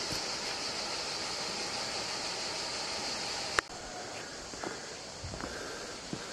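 Steady rush of river water, cut off abruptly with a click a little past halfway. After that there is a quieter outdoor hush with a few soft rustles.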